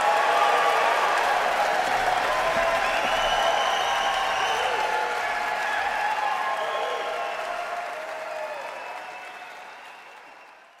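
Concert hall audience applauding with scattered cheers as the song ends; the applause fades out over the last few seconds.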